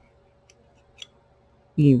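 A couple of faint, short clicks from a loom-knitting hook catching on the pegs of a knitting loom as loops are knitted off, about half a second and a second in. A spoken word follows near the end.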